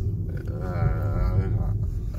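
A sedated teenager, his jaw wrapped after wisdom-teeth extraction, lets out a drawn-out wordless 'uhh' lasting about a second, its pitch wobbling, slurred from the anaesthetic. A steady low car-cabin rumble runs underneath.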